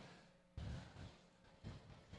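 Near silence: faint room hush with a couple of weak low bumps.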